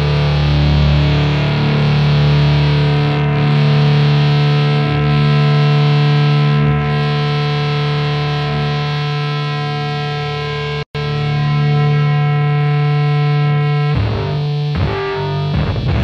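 Sludge metal: heavily distorted electric guitar holding long droning notes that ring on with feedback, cut off abruptly about eleven seconds in. After a brief gap, guitar starts up again near the end as the next song begins.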